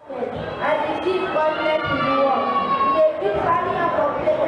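A child's voice over a microphone, high-pitched, with some syllables drawn out.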